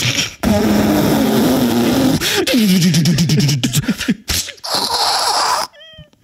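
A man's mouth-made sound effects, imitating a tram on the move: a long hissing, buzzing noise with his voice under it, then a voiced sound sliding down in pitch, then a shorter hiss.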